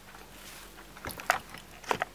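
Three short clicks and knocks in quick succession, the first about a second in and the middle one the loudest.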